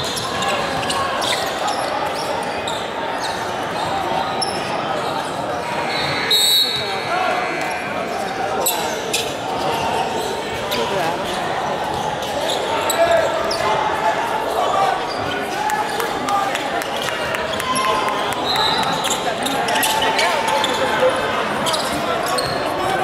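Basketball game sounds in a large gym: a ball dribbled on the hardwood floor amid the echoing voices of players and spectators.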